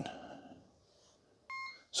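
Eufy RoboVac 25C robot vacuum giving a short electronic beep about a second and a half in. It is the locator tone set off by the app's 'Find My Robot' button.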